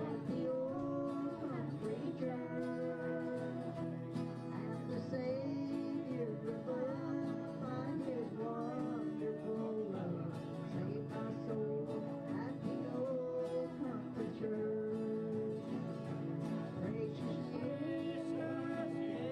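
Small acoustic band playing a song: acoustic guitars strummed with a flatpick in a steady rhythm while a woman sings the melody.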